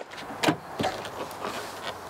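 A car's rear door being opened: a clear knock of the latch about half a second in and a smaller click just after, over light background noise as someone starts to climb in.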